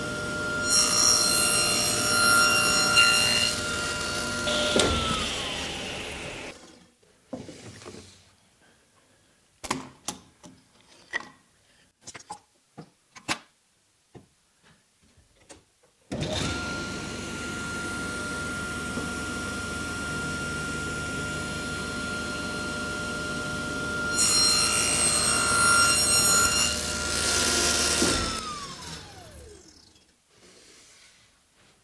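Tablesaw blade cutting a spline groove across a mitred box corner held in a jig, twice. Each time the saw runs, bites into the wood for about three seconds, then is switched off and winds down with a falling whine. Between the two cuts the saw is silent for about ten seconds while the wood and jig knock and click as the workpiece is turned round, then the motor starts again with a sudden rush.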